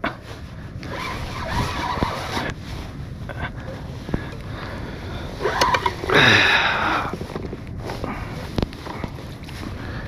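A fishing reel being cranked against a hooked fish from a kayak, with scattered knocks and handling clicks on the rod and hull and water moving around the boat. A rush of noise comes about six seconds in.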